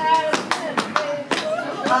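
A few scattered handclaps, sharp and irregular, about eight in two seconds.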